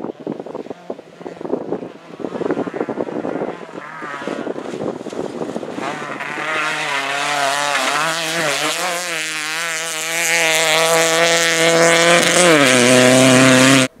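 Rally car on a gravel stage: irregular crackle of gravel and engine for the first few seconds, then the engine revving hard and getting louder as the car approaches, with the pitch stepping down near the end.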